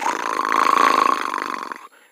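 A person imitating a cat's purr with their voice: one continuous, rattling throat purr lasting nearly two seconds and fading out near the end.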